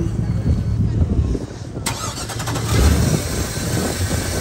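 Indmar Assault 325 MPI inboard boat engine turning over and running unevenly in its open engine bay. About halfway through there is a sharp click, and then a louder hissing noise joins the engine rumble.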